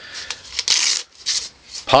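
Hook-and-loop (Velcro) flap on a Blackhawk nylon magazine pouch being pulled open, in about three short rasping tears, the loudest a little under a second in.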